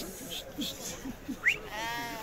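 A sheep bleats once, a single quavering call near the end, just after a brief sharp squeak. Murmured voices of a crowd sit underneath.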